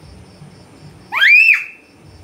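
A toddler's short, high-pitched squeal that rises sharply in pitch, a little over a second in.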